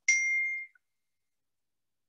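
A single short electronic ding: one clear tone with a fainter, higher tone above it, dying away within about three-quarters of a second.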